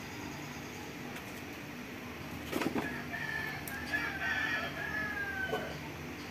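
A rooster crowing once. It is one long call of about three seconds that starts a little before halfway and falls slightly in pitch at its end.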